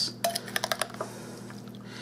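A metal spoon stirring sugared, juicy strawberry slices in a glass bowl, clicking against the glass about eight times in quick succession during the first second.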